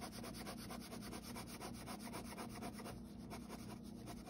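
Pen scratching rapid back-and-forth crosshatch strokes on sketchbook paper, faint and evenly repeated.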